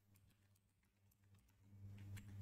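Faint computer keyboard typing, a scatter of quiet key clicks, over a low steady hum.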